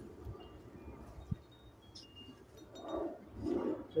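Hands and a small tool working bone meal into potting soil in a plastic bucket: soft scraping and rustling, louder about three seconds in, with one sharp click. Faint, brief high tinkling tones sound here and there in the background.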